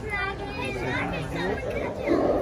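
Chatter of several voices, children's among them, with no one voice clearly in front.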